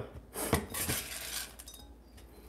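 Glazed ceramic dosing tray being set down and settled on a digital kitchen scale: a few light clinks and scrapes of ceramic against the scale's top.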